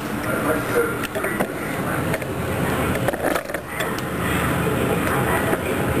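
Rubbing and handling noise with a few light knocks as a plastic cutting board loaded with cubed tomato and potato is picked up and carried over to the pot.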